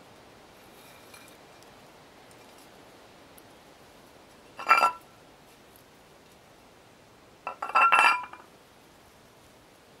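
A small plate clinking: one short clink about halfway through, then a quick cluster of several clinks with a brief ring near the end as it is knocked and set down on stone.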